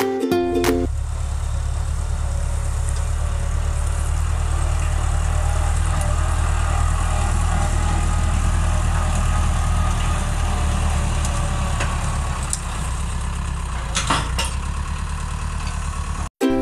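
Tractor's diesel engine running steadily under load while pulling a disc plough through dry rice stubble, with a few sharp clicks near the end. Ukulele music plays for about the first second before cutting out.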